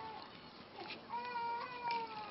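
Faint, drawn-out high-pitched animal cries: one tails off just after the start, and a second, level cry follows in the second half, lasting under a second.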